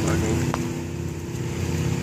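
Motorcycle engine idling steadily, with one light tick about half a second in.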